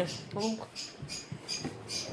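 A short spoken word about half a second in, then quiet kitchen room sound with a few faint clicks.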